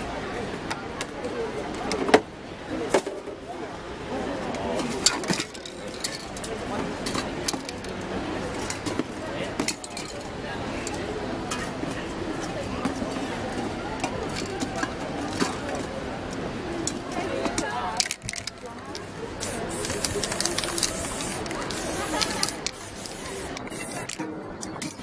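Aerosol spray-paint can hissing in long bursts in the last few seconds as pink paint goes onto the white paper. Before that come scattered sharp clicks and knocks as the spray cans are handled.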